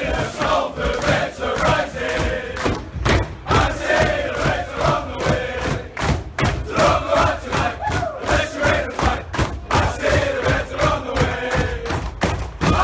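A team of men singing a victory chant together at full voice in a changing room, with claps and thumps beating time throughout.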